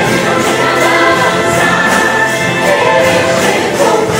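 Choir singing gospel music, accompanied by an ensemble of acoustic guitars.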